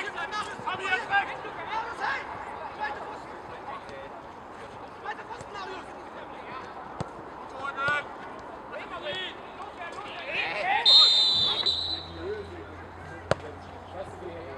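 Football match sounds: players shouting across the pitch, a few sharp ball kicks, and a short referee's whistle blast about eleven seconds in, the loudest moment.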